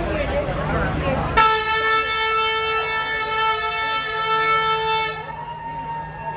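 Semi-truck air horn sounding one long, steady blast of about four seconds, starting just over a second in, over crowd chatter.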